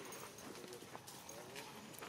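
Faint voices in the background, with a few soft clicks.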